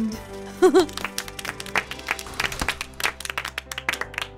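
A few people clapping in scattered, uneven claps over soft background music, after a short wavering vocal sound about half a second in.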